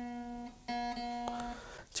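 Open B (second) string of a Squier Affinity Telecaster Deluxe electric guitar, plucked twice at the same pitch. The first note fades out about half a second in; the second is plucked about 0.7 s in and rings until it stops short about a second later. The string is being checked against a tuner while its intonation is set at the bridge saddle.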